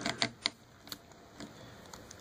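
Plastic action figure being handled and its joints flexed by hand: several light clicks and taps, most in the first half second, then a couple of fainter ones.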